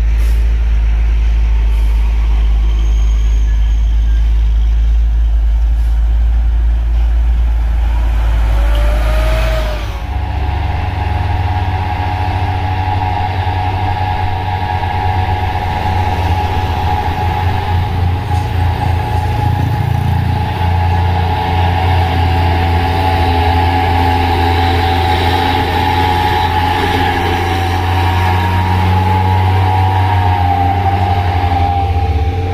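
Heavy trucks' diesel engines running with a strong low rumble. About ten seconds in, the sound changes to a box truck's diesel engine pulling uphill, with a steady whine over the engine note that grows louder as the truck passes close near the end.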